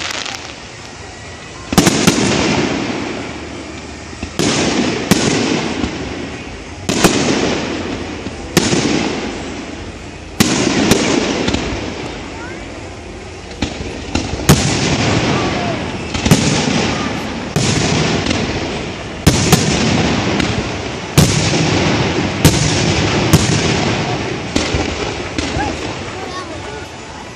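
Aerial firework shells bursting in quick succession, about eighteen sharp bangs one to two seconds apart, each trailing off in a rolling echo.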